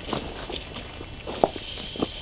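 Scattered crunches and clicks of footsteps shuffling on loose railway track ballast, with one sharper click about one and a half seconds in.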